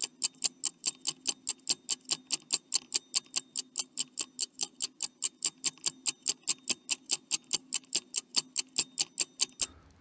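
Countdown-timer ticking sound effect: a fast, even tick about five times a second that stops just before the end.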